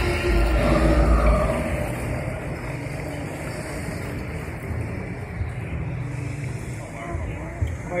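Water-ride boat moving along its channel: a steady low rumble with churning, splashing water, louder in the first second or so and then settling to an even wash.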